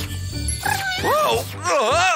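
Two cartoon cat meows, the first starting about half a second in, rising and falling, the second near the end, over background music.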